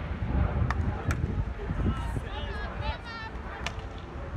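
Outdoor field hockey match sound: wind rumbling on the microphone, with faint distant shouts from the players in the middle and three sharp knocks of sticks striking the ball.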